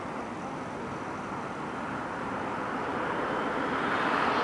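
Outdoor city noise: a rushing sound from an approaching vehicle, growing steadily louder.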